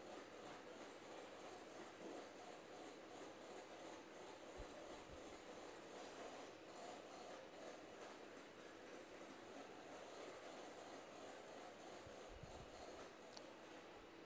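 Near silence: faint steady kitchen room tone with a low hum.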